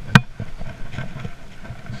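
Handling noise from a baitcasting rod and reel after a short cast: one sharp click just after the start, then light ticks and low bumps.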